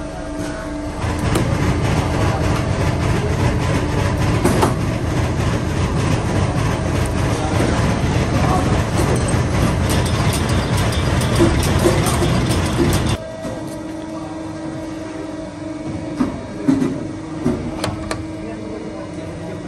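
Stator coil inserting machine running, a loud steady mechanical rumble and rattle as it pushes the wound copper coils into a fan stator core. It starts about a second in and cuts off suddenly about two-thirds of the way through. A quieter steady machine hum follows, with a few short clicks near the end.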